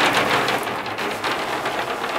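A large wooden closet door sliding open along its track, giving a steady rolling noise.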